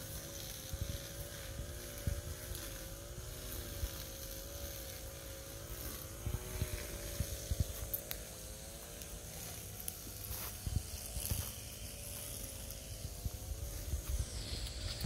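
A steady motor-like drone that wavers slightly in pitch, with soft irregular thumps of footsteps on a leaf-covered dirt path.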